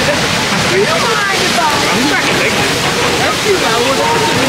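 Strong wind blowing across the microphone, a loud, steady rushing noise, with people's voices coming through underneath.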